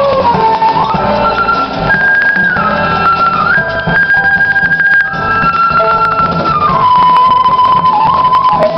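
Live jazz band playing: a wind instrument holds long melody notes with short slides between them, over piano and upright bass.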